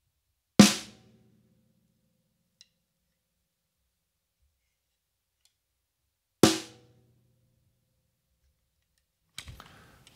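Snare drum struck twice, about six seconds apart, single hits at the same force with two different types of stick; each hit is sharp and rings out for about half a second.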